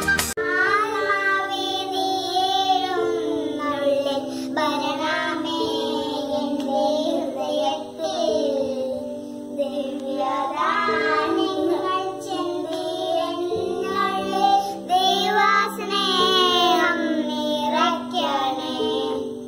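A child's voice singing a slow melody over a backing of held chords that change every few seconds.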